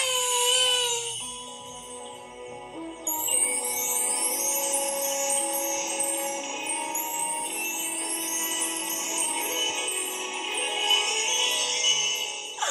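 Children's TV theme music: a held sung note in the first second, then an instrumental stretch of sustained tones with twinkling chime glides rising over and over every second or two.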